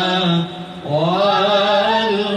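A solo voice chanting in Arabic, with long held notes that waver slightly. About half a second in it breaks off briefly, then a new phrase starts low and rises.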